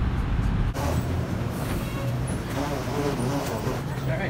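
Low road rumble inside a car cabin at highway speed, which cuts off abruptly under a second in. A quieter, steady background with faint voices follows.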